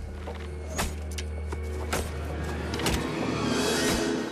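Dramatic film score with a steady low drone, cut by a few sharp hits and swishes from battle sound effects. It builds into a rising rush of noise near the end.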